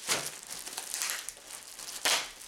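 Plastic packaging bag crinkling as it is handled and opened, in irregular crackles, the sharpest near the start.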